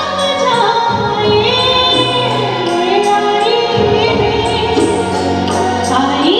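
A woman singing live into a microphone over band accompaniment, in long held notes that glide up and down.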